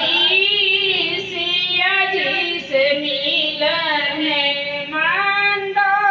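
A woman singing into a microphone, holding long sustained notes that slide between pitches, in phrases with short breaks.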